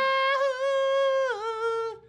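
A corgi howling in one long, steady note that dips slightly in pitch after about a second and a half, then stops.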